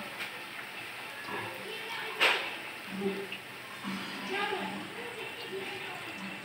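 Wire slotted spoon and spatula scraping through fried onions in a nonstick wok, with one sharp metal clink against the pan about two seconds in. The hot oil sizzles faintly underneath. Faint voices are heard in the background.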